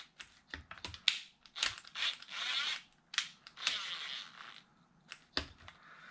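Handling noise from a cordless screwdriver and the plastic chassis of an RC truck while its screws are tightened: scattered clicks and knocks, with short scratchy rasps about two seconds in and again about three and a half seconds in.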